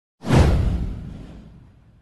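Whoosh sound effect with a deep boom underneath, starting suddenly and fading away over about a second and a half.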